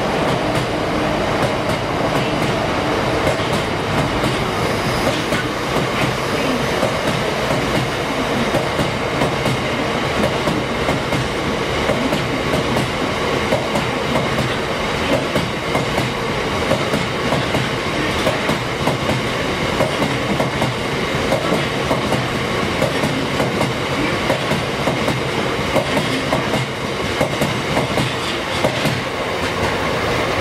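Loaded aggregate box wagons of a heavy freight train rolling past at steady speed, their wheels clattering in a continuous run of clicks over the rail joints.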